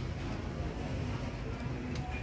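Steady outdoor background noise: a continuous low rumble with faint, indistinct sounds over it and no distinct event.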